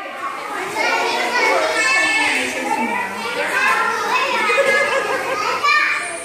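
Several young children chattering and calling out over one another, an unbroken babble of small voices.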